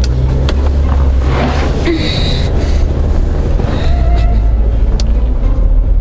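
Road noise inside a moving car's cabin: a steady low rumble of engine and tyres, with a few clicks.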